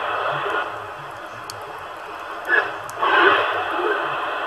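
CB radio receiver hiss and static in AM while the channel is being changed across the 27 MHz band, with faint, unreadable signals swelling up briefly about two and a half seconds in and again at three seconds.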